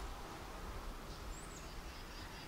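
Quiet outdoor ambience: a steady low rumble under an even hiss, with one short high chirp about one and a half seconds in.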